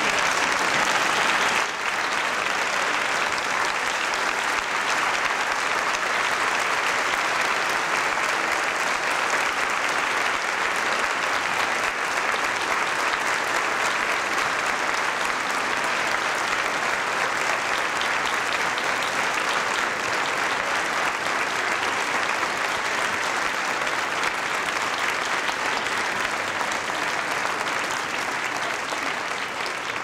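A large theatre audience applauding steadily and continuously, the clapping easing off slightly near the end.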